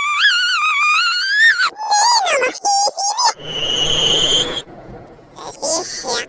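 A cartoon character's voice, electronically pitch-shifted high, wailing with a wavering pitch and then breaking into shorter cries. About halfway through it gives way to a hissy noise with a thin steady whistle for about a second, and voice sounds return near the end.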